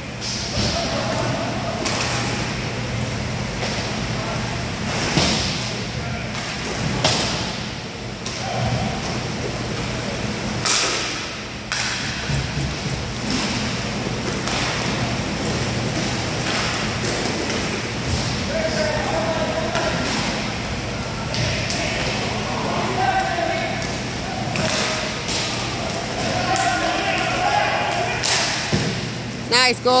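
Inline hockey play on a sport-tile rink: scattered sharp knocks and thuds of sticks on the puck and the puck striking the boards, with indistinct shouts from players and a steady low hum from the building.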